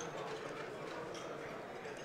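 Faint arena ambience: a quiet crowd murmur in a large hall, with no single event standing out.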